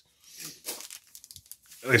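Foil wrapper of a baseball card pack crinkling as it is handled, with a few short crackles about halfway through. A man starts speaking near the end.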